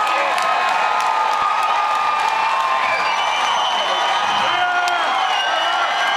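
Concert crowd cheering and screaming, with long high-pitched whoops held over a dense din of voices.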